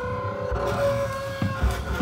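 Chamber jazz ensemble of winds, strings, double bass and drums playing: held notes sustained over a low pulsing bass line, with a few low hits from the rhythm section.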